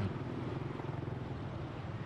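Street traffic, mostly motorbike engines running steadily as scooters pass close by.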